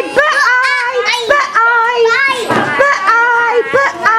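Children talking, their high young voices following one another with hardly a pause.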